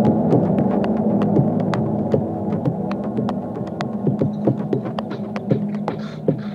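Electronic techno-ambient track: dense layers of low, steady droning tones with sharp clicks scattered irregularly over them, a few a second. The level eases down slightly in the second half.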